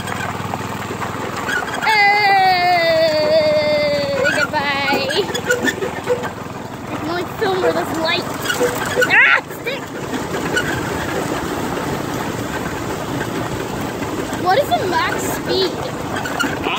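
Go-kart running over a bumpy dirt track, a steady rumble and rattle of the ride. About two seconds in, a rider's long drawn-out voice wobbles with the bumps, and there is a short rising cry near the middle.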